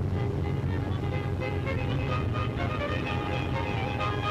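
Music over a steady low engine rumble from vehicles.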